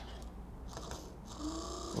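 Small 24-volt brushed electric motor from a totalisator display running briefly on a bench supply: a faint, steady whir that starts under a second in. It is running again after a sticky brush was cleaned.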